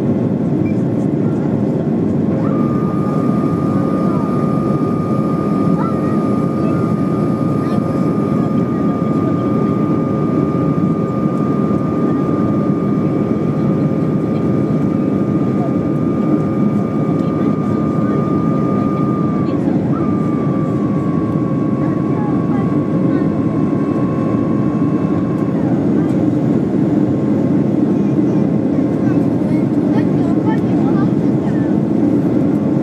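Airliner cabin noise in flight: a steady, even rush of engines and airflow. A thin steady whine joins a couple of seconds in, steps slightly lower about twenty seconds in, and stops a few seconds later.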